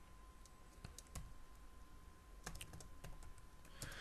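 Faint computer keyboard keystrokes: a few single key taps, then a quick run of several taps about two and a half seconds in, as a stock ticker symbol is typed into charting software.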